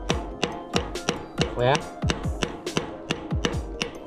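Hammer striking the rear sprocket cluster of a bicycle wheel in quick repeated taps, about four a second: metal-on-metal blows to loosen a stuck freewheel that would not come off.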